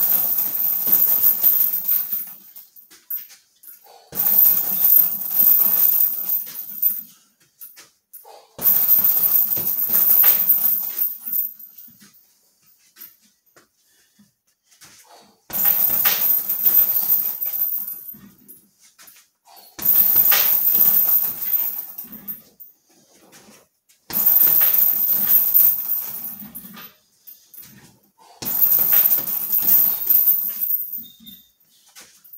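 Repeated flurries of strikes on a heavy bag hung on a chain, seven bursts of about two to three seconds each, roughly every four seconds, with the chain rattling.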